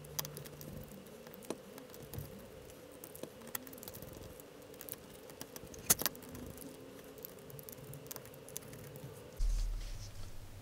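Small screwdriver driving tiny screws through an acrylic case panel into the standoffs of a circuit board, with faint scattered clicks and taps of screws and plastic, one sharper click about six seconds in, over a faint steady hum. Near the end, fingers handle the cased board.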